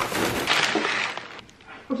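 Paper rustling and crinkling as a sandwich in brown wrapping paper is pulled from a paper bag, loud for about the first second and a half and then fading to a few faint rustles.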